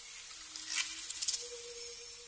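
Wood campfire burning: a steady hiss with a few sharp crackles from the burning logs, over faint held tones.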